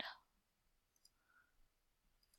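Near silence, with two faint computer-mouse clicks, one about a second in and another about half a second later.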